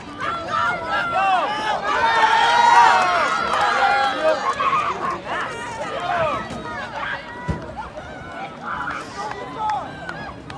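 Spectators in the stands shouting and cheering, many voices overlapping. The shouting is loudest a couple of seconds in and dies down over the second half.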